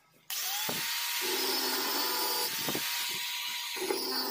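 Bosch Professional angle grinder starting up about a third of a second in with a rising whine, then running loud and steady as its thin cutting disc cuts into hardened steel from an old file.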